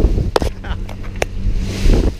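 Wind buffeting the microphone over the steady low hum of a boat's engine under way, with two sharp knocks, one near the start and one about a second in.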